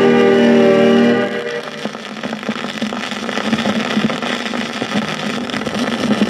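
A vinyl record playing on a turntable: the song's final held chord stops about a second in. After that the stylus runs on through the silent end groove, giving steady crackle and clicks of surface noise over a low hum.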